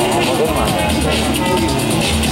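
Electronic dance music with a steady beat and a bass line, with a voice over it.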